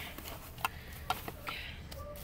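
A few light, sharp clicks and faint crinkling of plastic bags and packaging being handled while rummaging through a dumpster.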